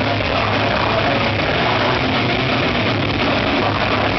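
Death metal band playing live: heavily distorted electric guitars, bass and drums in a dense, loud, unbroken wall of sound.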